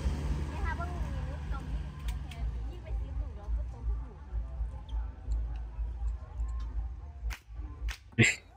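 Fairground crowd chatter over a low hum, with a few sharp pops from a shooting-stall toy rifle, the two loudest close together near the end.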